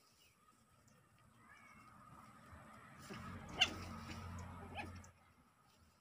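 Puppies play-fighting, with faint whimpers and one sharp, high yip about three and a half seconds in.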